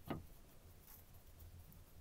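Near silence: room tone, with one faint brief sound just after the start.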